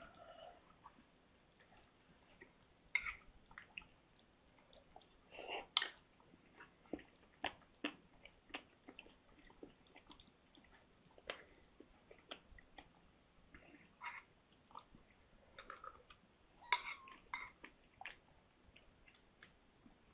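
Mother cat eating from a bowl: faint, irregular smacking and chewing clicks throughout, with a few louder clicks scattered among them.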